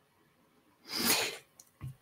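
A short, breathy sound from a person about a second in: one quick, noisy breath, with no voice in it.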